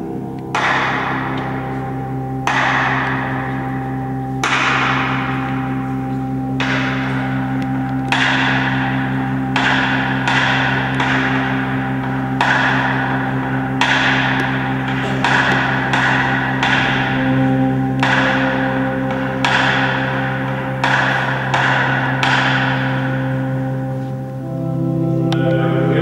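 A low held drone, a choir-like sustained note that shifts pitch slightly about two-thirds of the way through. Over it come about eighteen struck metallic rings at uneven intervals of one to two seconds, each one bell-like and fading away.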